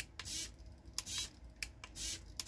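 The two-way momentary trim switch on a RadioMaster MT12 radio transmitter is being clicked repeatedly, giving a series of light plastic clicks.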